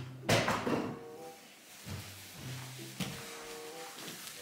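A sudden knock or clatter about a quarter of a second in, the loudest sound here, followed by quieter low steady tones and a few softer knocks.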